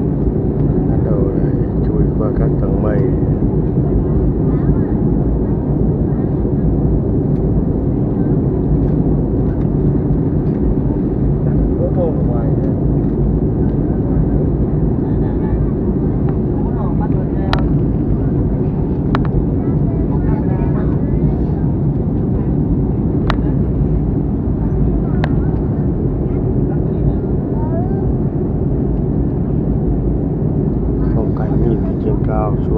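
Steady cabin noise of a jet airliner in flight, heard from a window seat: an even, deep rush of engines and airflow with a few low tones in it. Faint voices come through now and then, and a few sharp clicks sound in the second half.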